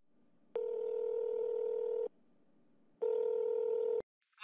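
Telephone ringback tone of an outgoing call: a steady electronic ring heard over the phone line, two rings about a second apart, the second shorter as the call is picked up.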